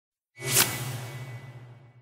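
A whoosh sound effect for a logo reveal: it swells in quickly, peaks about half a second in, then fades away over the next second and a half, with a low hum and a faint steady high tone under the tail.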